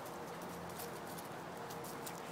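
Faint rustling and crackling of dry fallen leaves and grass underfoot, with a few short clicks.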